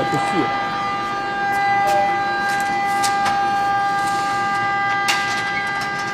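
A steady machine whine with several even, unchanging pitches, with scattered sharp clicks and knocks of handling on top.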